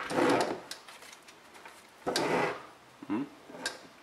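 Plastic FPV goggles being handled and shifted on a wooden tabletop: two short rubbing scrapes about two seconds apart, with a few light clicks.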